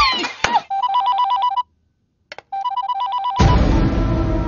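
Electronic telephone ringing twice with a fast warble between two tones. Each ring lasts about a second, with a short silent gap between them. Music comes in just after the second ring.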